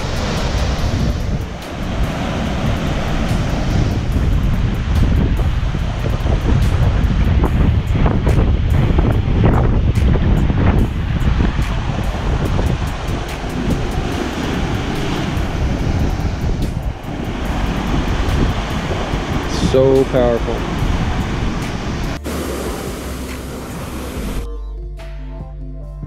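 Ocean surf surging into a rocky inlet and breaking over the rocks, with a steady rush of churning water and some wind on the microphone. Near the end, background music begins.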